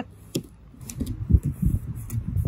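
Hands pressing and smoothing duct tape around a plastic gallon jug, a run of dull thumps and rubbing on the plastic, with a sharp click about a third of a second in.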